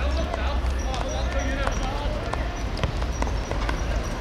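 Football players shouting and calling to each other on the pitch, with scattered sharp thuds of the ball being kicked and of running feet, over a steady low rumble.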